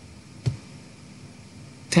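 Quiet recording hiss in a pause, broken by a single short, sharp click about half a second in.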